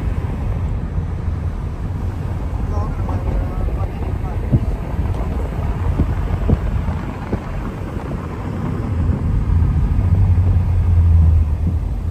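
Steady low rumble of a car in motion, louder for a couple of seconds near the end, with faint voices underneath.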